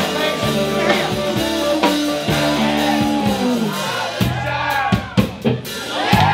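Live rock band playing with guitars and a drum kit: held chords for the first few seconds, then a run of separate drum hits with short gaps near the end.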